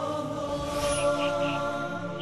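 Intro music of sustained, wordless voices in a chant-like drone, with three short high chirps in the second half.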